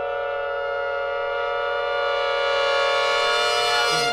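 Jazz brass section holding one long sustained chord, swelling slightly, then released at the end.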